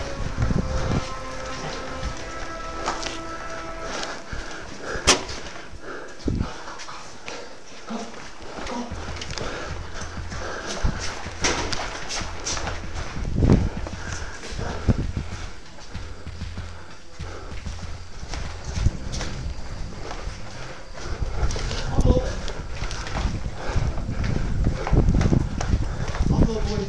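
Footsteps on a hard floor and scattered knocks and clicks of gear, with music in the background.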